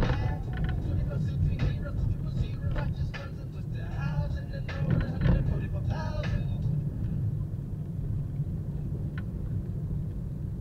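Steady low rumble of a car's engine and tyres on a concrete road, heard from inside the cabin while driving. Indistinct talk runs over it for the first seven seconds or so.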